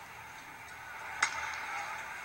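Ballpark crowd murmur, with a single sharp crack of a bat about a second in as the batter fouls off the pitch.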